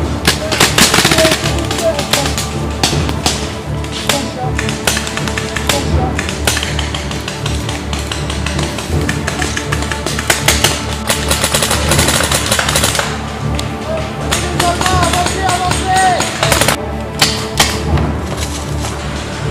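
Background music laid over many quick sharp pops of paintball markers firing, coming in clusters.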